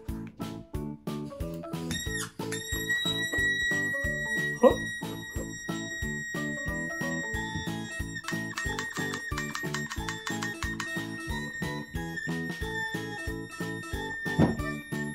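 A toddler-shoe squeaker whistle sounding one long, steady high whistle as air from an inflated balloon escapes through it, starting with a quick upward swoop about two seconds in and wavering briefly past the middle. A sharp click about four and a half seconds in; background music with a plucked-string beat runs underneath.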